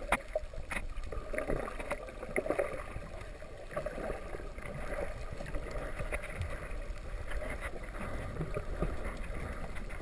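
Underwater sound picked up by a camera in the sea: a steady, muffled wash of water noise with scattered sharp clicks and crackles throughout.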